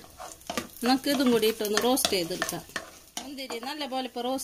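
Wooden spatula stirring cashews and raisins frying in oil in a nonstick pan: scraping and clicking strokes over a light sizzle, with a voice speaking at times.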